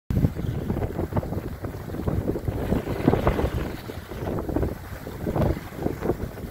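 Wind gusting unevenly across the microphone aboard a Cal 29 sailboat close reaching in about fifteen knots of wind, with water rushing past the hull.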